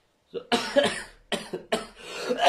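A person coughing: a run of several sharp coughs close together, starting about half a second in.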